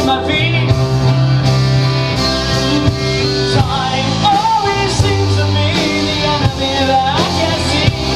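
Live rock band playing a song: a male lead vocal sung over keyboard, electric guitar, electric bass and drums.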